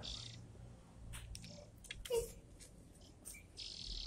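A young jongkangan bird calling faintly as it is hand-fed, with short, high chirps and a buzzy call that starts near the end. There is a light tap about halfway.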